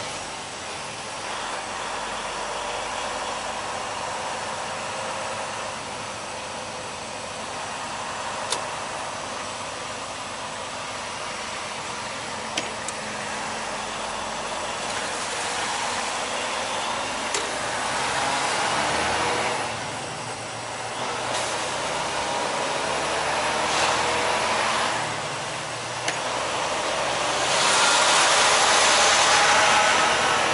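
Inside a semi truck's cab under way: the engine running with steady tyre and road noise on a wet road, the engine's pitch rising in the second half as the truck picks up speed. The hiss swells louder several times, most loudly near the end.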